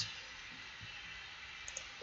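Two faint computer mouse clicks in quick succession near the end, over low steady hiss.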